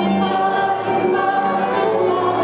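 A group of voices singing a Yiddish folk song together, with instrumental accompaniment.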